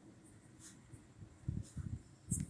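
Pen writing on paper on a clipboard: faint, short scratching strokes, with a few soft low thumps in the second half.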